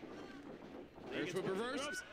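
Faint speech: a voice talking quietly in the second half over low background hiss.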